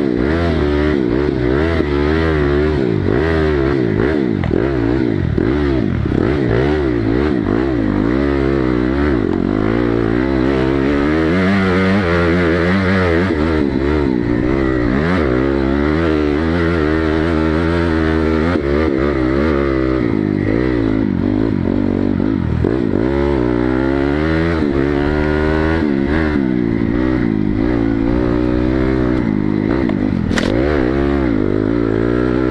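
Dirt bike engine heard close up from a camera on the bike, revving up and down over and over as it is ridden along a dirt trail, its pitch rising and falling with throttle and gear changes.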